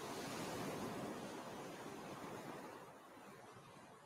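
Ocean surf: a single wave washing in, a rushing noise that swells to its loudest within the first second and then slowly fades as it recedes.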